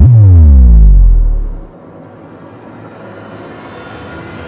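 Logo-intro sound design: a sudden deep bass hit that drops steeply in pitch and rings for about a second and a half, then falls away to a quiet electronic drone.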